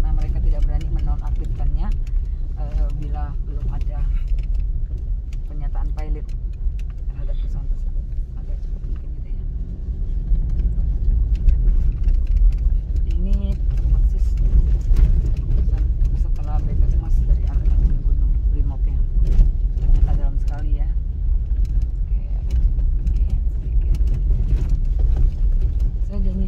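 Inside the cabin of a car driving over a rough, wet dirt road: a steady low rumble of engine and tyres, broken by frequent short knocks and rattles as the car jolts over the ruts.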